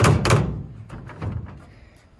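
Heavy hollow thunks from a stepladder tied down in a pickup's bed being knocked or jolted: two loud ones close together at the start, a softer one a little over a second later, then it settles.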